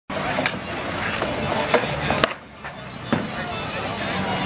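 Hockey sticks knocking against the ball and the rink in about five sharp, irregular clacks, over voices of players and onlookers that drop away briefly just after the middle.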